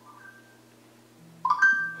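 A short chime: a tone with a sudden start and several steady pitches that rings and fades, about a second and a half in. Fainter tones come earlier, and a low steady hum runs underneath.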